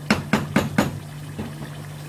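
A spoon stirring thick mutton karahi gravy in a karahi, knocking against the pan about four times in quick succession near the start, then quieter stirring.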